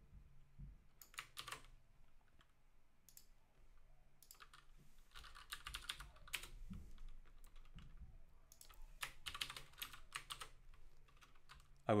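Computer keyboard typing in several short, faint bursts of keystrokes.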